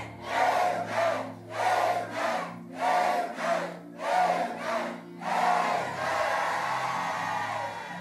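Church congregation shouting "Amen" together in a run of about seven loud shouts, one roughly every three-quarters of a second, with the last one drawn out for about two seconds. Steady held music notes sound underneath.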